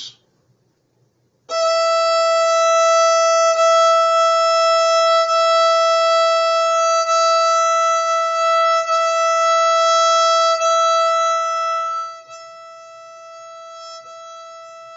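Violin's open E string bowed in long, even strokes: one steady high note, with a bow change about every two seconds. It starts about a second and a half in and turns much softer near the end.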